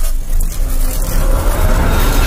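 Cinematic intro sound effect: a loud, deep rumble with a hiss over it, starting suddenly and holding steady, under a blue energy-burst animation.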